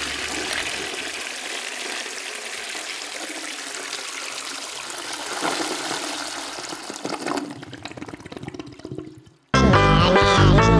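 A toilet flushing: a steady rush of water that tails off over its last couple of seconds. Just before the end, lively music starts suddenly.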